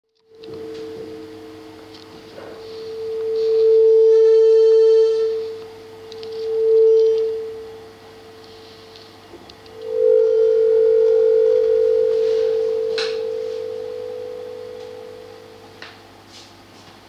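A steady electronic mid-pitched tone with a fainter lower tone under it, played into the room to tune it into standing waves and interference. It swells loud about four seconds in and again near seven, briefly joined by higher tones, then from about ten seconds holds loud and slowly fades. A sharp click comes near the end.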